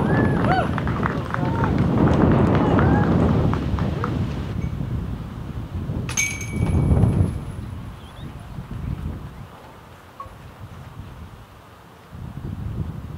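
A putt strikes the chains of a metal disc golf basket about six seconds in, a sharp metallic clash that rings on briefly. Spectators' voices murmur around it.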